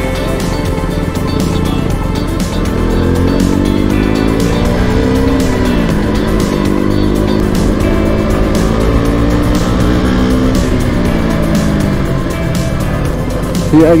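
KTM RC 200's single-cylinder engine running steadily while riding, its pitch rising and falling twice, once around a few seconds in and again in the second half, with background music playing throughout.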